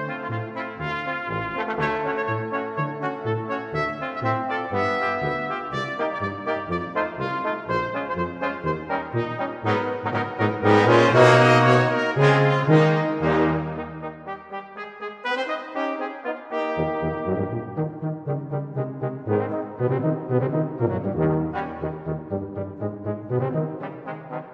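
Brass band playing short, detached notes over a bass line. The full band swells to a loud peak about halfway through, the bass drops out briefly, then the band comes back in with short repeated notes.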